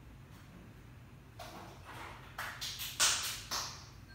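Off-camera handling noise: a few short rustles, starting about a second and a half in, the loudest about three seconds in.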